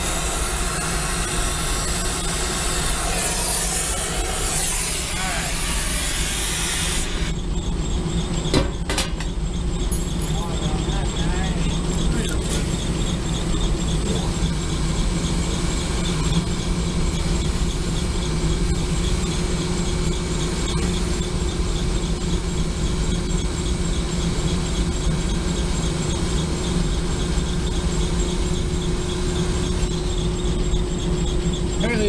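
Brazing torch flame hissing steadily on a copper refrigerant line joint for about seven seconds, then cut off suddenly, followed by a couple of sharp clicks. A steady low mechanical hum runs underneath throughout.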